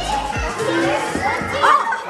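A young child's high voice calling out, loudest near the end, over background pop music with a bass beat.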